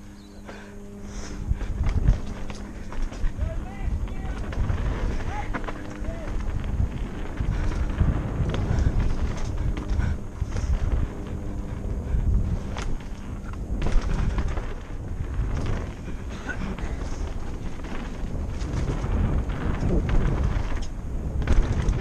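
Mountain bike riding fast down a dirt singletrack, heard from the rider's helmet: a constant rumble and rattle of tyres and frame over rough ground, with frequent sharp knocks as the bike hits bumps.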